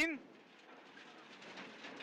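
Faint, steady running noise of the Subaru Impreza WRX STi rally car at speed, heard from inside the cabin, with the lowest frequencies cut away. The tail of a spoken word comes at the very start.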